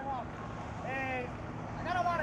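Bay boat's outboard engine idling, a steady low hum, with a brief faint voice about a second in.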